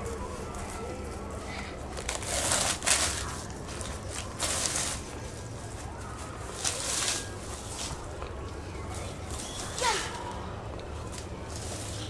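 Plastic leaf rake dragged through grass and dead leaves in four short, scratchy strokes, a couple of seconds apart.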